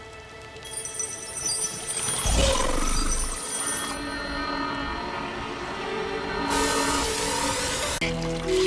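Dramatic background score of sustained tones, swelling about two seconds in. About a second and a half before the end, a high hissing sizzle of sparks joins it.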